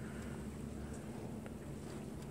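Faint sloshing of soapy water in a plastic dishpan as a hand presses a fabric cap under the surface, over a low steady hum.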